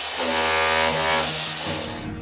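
Cordless rotary hammer with a chisel bit chipping into a plastered brick wall. It runs for about a second, then a short second burst follows near the end.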